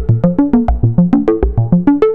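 Sequenced synthesizer patch on the mki x es.edu DIY modular system: a fast, even run of short plucked notes, about eight a second, stepping through different pitches, with a deeper low note about twice a second.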